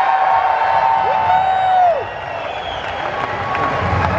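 Concert crowd cheering and clapping, with two long held "woo" shouts from fans in the first two seconds.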